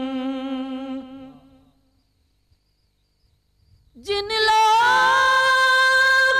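A man's solo voice singing a naat into a microphone, with no instrument under it. A long held note wavers and fades out over the first two seconds, then after a pause of near silence a new long note starts at about four seconds, glides up slightly and is held steady.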